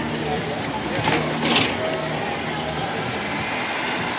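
A police car's engine running as it rolls slowly past, over background crowd chatter.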